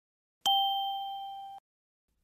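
A single clear ding sound effect, struck about half a second in and fading for about a second before it cuts off abruptly: a transition chime marking the move to the next section of the lesson.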